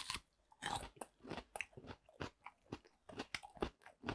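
Close-miked biting and chewing of a raw, skin-on air potato (aerial yam bulbil) slice: a bite at the start, then a quick, irregular run of crisp crunches through the firm, radish-like flesh.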